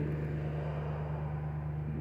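A steady low hum with a faint background hiss.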